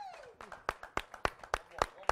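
A high voice sliding down in pitch, then steady hand clapping from about half a second in, sharp single claps at about three to four a second.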